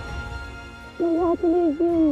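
Background score of a TV drama: soft sustained music, then about a second in a melody of three short, louder held notes, the last one falling away.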